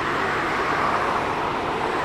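Road traffic: a car passing close by, its tyre and engine noise swelling to a peak about half a second to a second in, then holding steady.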